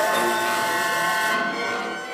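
Symphony orchestra holding a sustained chord of several steady tones. The bright top of the sound drops away about a second and a half in.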